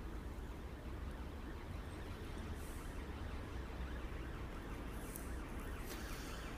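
Quiet low background rumble of outdoor ambience, with a faint distant siren starting to wail in near the end.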